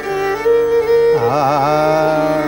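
Male Hindustani classical vocal: a long held sung vowel, then a little past a second in a quick wavering ornament that settles onto a lower held note, over a steady tanpura drone.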